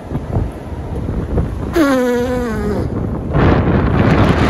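Strong wind buffeting the phone's microphone, with a stronger gust near the end. About two seconds in, a person's voice holds one slowly falling note for about a second.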